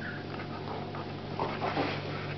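Two dogs play-wrestling, with a short dog whine or grumble about one and a half seconds in, over a steady low hum.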